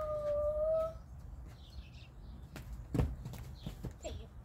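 A child's voice holding a drawn-out vowel fades out about a second in. Then come a few faint clicks and taps, with one sharper knock about three seconds in, over a low steady rumble.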